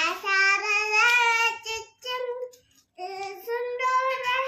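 A young child singing in long, drawn-out notes: a held note of nearly two seconds, a short note, then another held note that rises slightly near the end.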